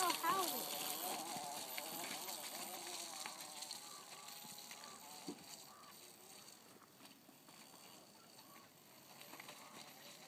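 Electric motor of a child's Oset trials bike whining, its pitch rising and falling with the throttle and fading away over the first few seconds to near silence. A single faint knock about five seconds in.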